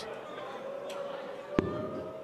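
A steel-tip dart striking the dartboard with a single sharp click about one and a half seconds in, over faint background arena noise.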